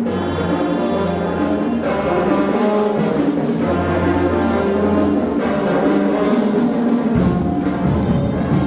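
School marching band playing: brass instruments sounding sustained chords over long low bass notes, with a steady percussion beat.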